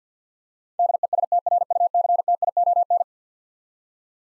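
Morse code sent as a single keyed tone at 50 words per minute. A rapid run of dots and dashes starts nearly a second in and stops about three seconds in, spelling out the word "destruction".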